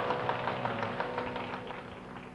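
Carnatic concert music dying away: a held drone under quick, light drum strokes, growing quieter toward the end.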